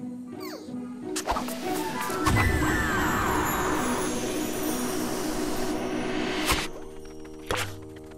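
Cartoon soundtrack music with a loud rushing whoosh effect and falling whistle-like tones from about two seconds in, ending in a sharp hit; the music carries on after it.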